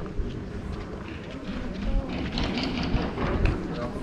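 Passers-by and café patrons talking, their voices becoming clearer in the second half, over a steady murmur of street noise.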